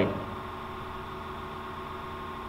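A steady electrical hum with a faint hiss beneath it, holding an even level throughout.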